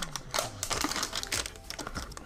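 Thin protective plastic film crinkling in a run of irregular crackles as it is handled and peeled off a phone case's built-in screen protector.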